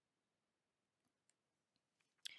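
Near silence: a pause between spoken sentences.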